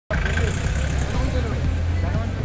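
Motorcycle engine idling with a steady low hum, under voices talking.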